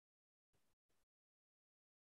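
Near silence: the line is almost completely quiet, with only two extremely faint specks of noise about half a second and a second in.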